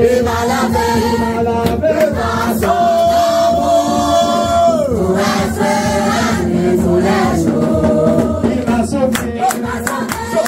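A group of people singing a song together in unison, one long held note dropping away about five seconds in, with a few sharp taps near the end.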